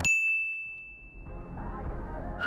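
A single bright ding: a chime is struck once and its high, pure tone rings on, fading away over about a second and a half. A faint low rumble comes in under it near the end.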